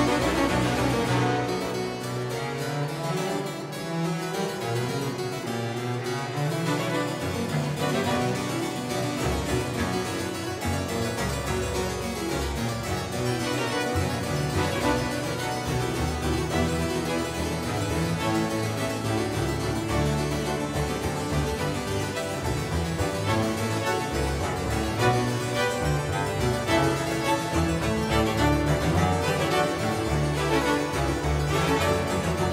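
Two harpsichords playing with a small Baroque string ensemble. The lowest bass line falls silent about a second in and comes back in several seconds later.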